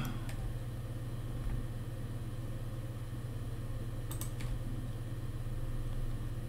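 A steady low electrical hum of a computer setup, with a few faint clicks of a computer mouse while the page is scrolled, a small cluster of them a little after four seconds in.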